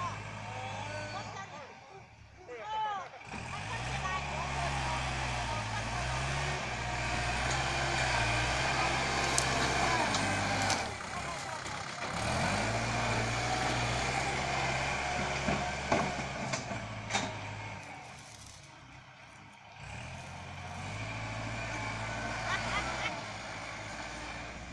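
Kubota L5018 tractor's diesel engine running under load as it grades soil, its revs climbing twice, about three seconds in and again about halfway, then holding steady.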